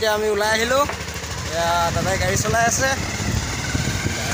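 Motorcycle running as it is ridden, a steady low rumble under a man's voice talking.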